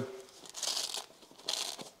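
Fabric coilover cover rustling as it is wrapped around a coilover spring and fastened with Velcro, in two short bursts of crinkly noise.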